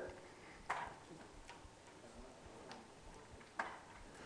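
Quiet room tone with a few faint clicks: one about a second in, one near the end, and tiny ticks between them.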